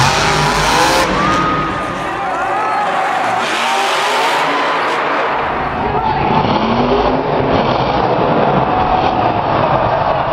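Monster truck engines revving hard, with rising and falling pitch, over the noise of a stadium crowd. The sound changes character about six seconds in, at a cut to another truck.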